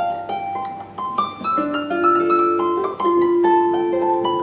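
Harp music: a slow melody of plucked notes that ring on, a few held longer in the middle.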